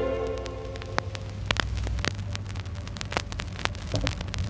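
The last notes of a vinyl single die away in the first half-second, leaving record surface noise: scattered clicks and pops from the stylus in the groove over a low rumble and hiss.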